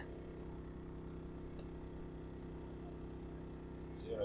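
A quiet, steady low hum with no distinct events.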